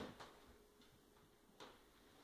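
A few faint, sharp clicks of a dog's claws on a wooden floor during a play-fight with a kitten: one at the start, another just after, and a third near the end.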